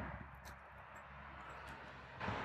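Faint outdoor background: a steady low rumble with a few soft ticks.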